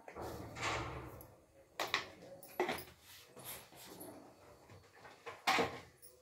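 A spoon scooping and scraping in a plastic jar, followed by several light clicks and knocks of plastic containers being handled. The sharpest knock comes about five and a half seconds in.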